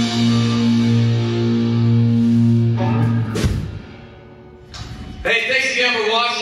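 Live rock band ending a song: electric guitar and bass hold one ringing chord, cut off by a final hit a little past halfway. After a short lull, a man starts talking near the end.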